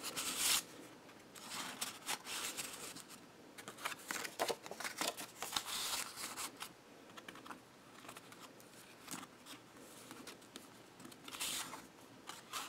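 Paper and cardstock rustling and sliding as tags are pulled from and pushed back into the pockets of a handmade mini album and its pages are turned; faint, irregular scrapes and rustles.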